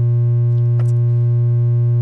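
Music: a loud, steady low electronic drone tone with overtones, unchanging in pitch, with one faint click a little under a second in.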